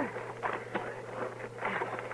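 Radio-drama sound effects as a wounded man is lifted to be carried: a few short scuffs and knocks over the steady low hum of the old recording.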